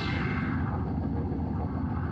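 A deep rumble, dense and flickering, as the organ's sustained tones die away at its start.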